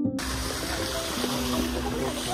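Steady outdoor rushing noise with a low rumble, starting abruptly a moment in, under faint background music.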